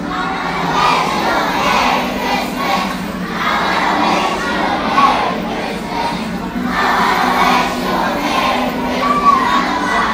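A large group of young children's voices together, singing and shouting loudly in a crowd, with no pause.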